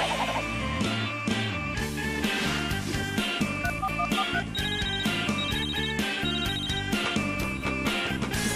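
Opening theme music for a TV series: a song with a steady drum beat.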